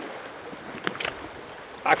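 Steady wind and water noise aboard a small open boat on a choppy lake, with a couple of faint clicks about a second in. A man's voice starts again near the end.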